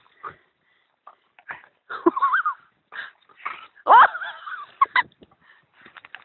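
A staghound whining in short wavering calls, the loudest about four seconds in, among brief rustles and knocks as it hauls a big stick out of the river through grass and brush.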